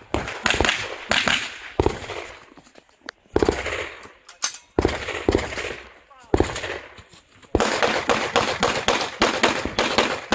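Gunshots fired in quick strings with short pauses between, then a faster, unbroken string of shots in the last couple of seconds.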